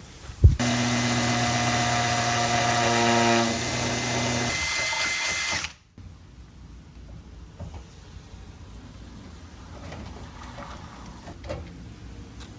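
A power drill's motor runs steadily for about five seconds after a sharp click, its pitch stepping down slightly under load before it stops suddenly.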